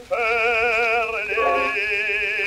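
Operatic baritone singing in Swedish on an early acoustic gramophone disc, holding a note with wide vibrato and moving to a slightly lower note about halfway through.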